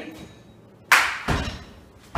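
A lifter's feet stamping down on the gym floor as he drops under an empty barbell into the overhead squat catch of a snatch balance. There is a sharp slap about a second in, then a heavier thud just after.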